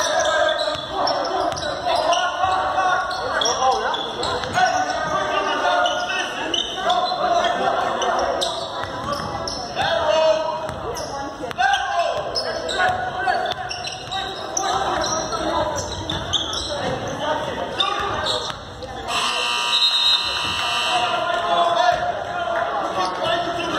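A basketball is dribbled and bounced on a hardwood gym floor, the thuds echoing through a large gym along with players' and spectators' voices. Near the end a steady high tone sounds for about two seconds.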